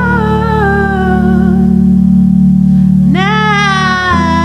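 Live looped music: a steady, sustained low cello drone under one long melodic note that slides slowly downward. A new, higher note starts about three seconds in.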